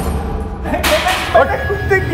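A sharp, whip-like swish about a second in, over a low steady rumble, with brief voice sounds after it.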